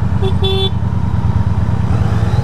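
Honda Shadow 750 V-twin motorcycle engine idling with a low, pulsing rumble. Under a second in, a vehicle horn gives two short beeps.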